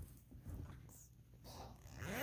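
Near silence, with faint handling noise as a zippered fabric pouch is picked up and moved about.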